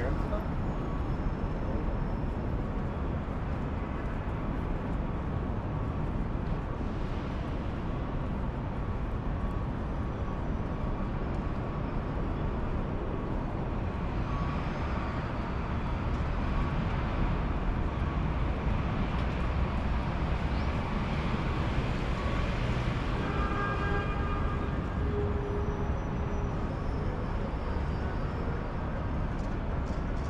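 Steady city street ambience: continuous low traffic rumble from passing and idling vehicles, with faint voices of passersby.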